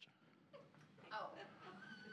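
Near silence in a room, with faint voices murmuring from about a second in.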